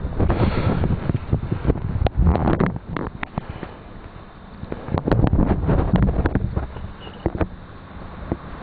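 Handling noise and wind buffeting on the camera's microphone as the camera is picked up and set back up: irregular low rumbling gusts with scattered knocks and clicks, heaviest near the start, about two seconds in and again around five to six seconds in.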